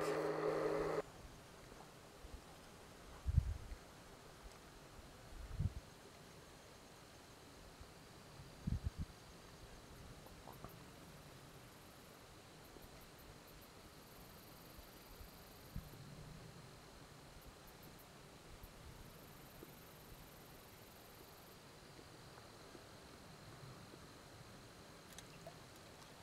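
A steady low hum that cuts off about a second in, then a quiet background broken by three short low thumps in the first ten seconds and faint, very high chirps in the middle.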